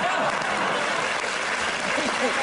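Studio audience applauding and laughing.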